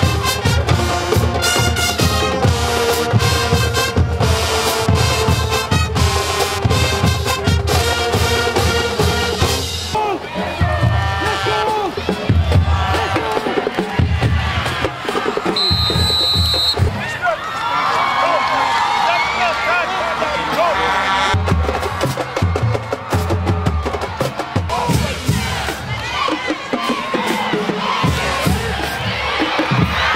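High school marching band playing in the stands, brass over a heavy bass and snare drum beat, for about the first ten seconds. After that the band thins out and crowd voices and cheering take over, with a short high steady tone about halfway through.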